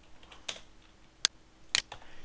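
Computer keyboard keys tapped about four times, spaced out, typing a stock ticker symbol.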